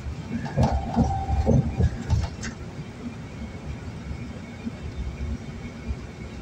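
Steady low road noise of a car driving on a highway, heard from inside the cabin. In the first two seconds there is a louder short burst with a held mid-pitched tone and a few clicks, source unclear.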